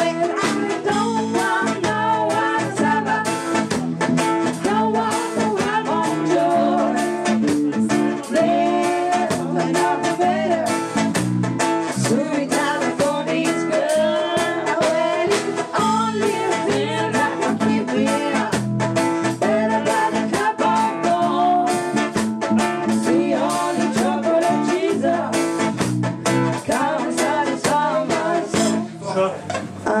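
Live band playing: a woman singing into a microphone over electric bass, drum kit and guitar.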